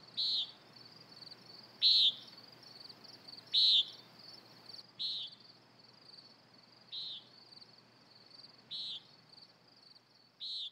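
Evening nature ambience: insects trilling steadily at a high pitch, with a short, high chirp repeating about every one and a half to two seconds, each falling slightly in pitch and growing fainter toward the end.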